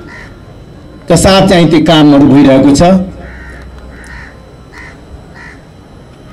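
A man speaking into a microphone for about two seconds. In the pause that follows, a bird calls about five times in short, evenly spaced calls.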